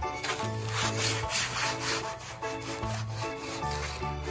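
Hands rubbing and scrubbing wet finger paint across paper in quick repeated strokes, a scratchy rasping sound that is loudest in the first half. Background music with plucked melody notes plays underneath.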